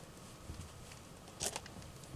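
Faint shuffling footsteps on gravel: scattered small crunches, with one sharper crunch about one and a half seconds in.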